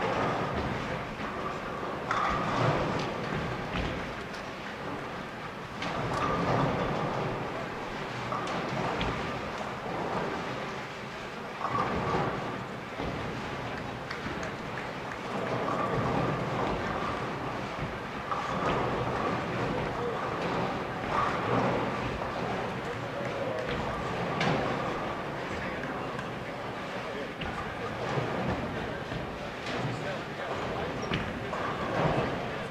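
Bowling centre din during tournament play: many people chattering, with bowling balls rolling and pins crashing at intervals on the lanes.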